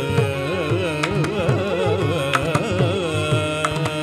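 Carnatic vocal music: male voices singing a melody that waves and bends in pitch, with violin and mridangam accompaniment, the drum's strokes cutting through at irregular moments.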